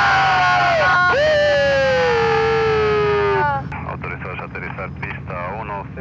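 Helicopter cabin: a steady low engine and rotor hum under loud, sliding, wailing pitched tones that cut off sharply about three and a half seconds in. After that, indistinct voices sound over the hum.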